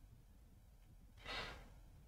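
Near silence: room tone, with one faint short breath a little over a second in.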